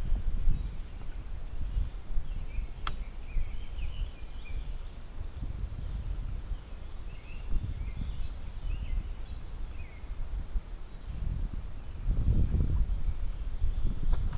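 Uneven low rumble of wind and handling on the microphone, with faint high bird chirps now and then and one sharp click about three seconds in.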